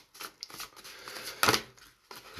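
A deck of oracle cards being shuffled by hand: a run of light card flicks and rustles, with one louder snap about one and a half seconds in.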